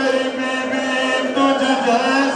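A man's voice chanting a mournful lament in long, held, slightly wavering notes. This is a preacher's sung recitation of the sufferings of the Karbala martyrs (masaib).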